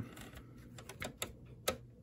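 A few faint, irregular clicks and taps: the plastic chassis and circuit board of an opened cassette tape player being handled as the board is tilted over.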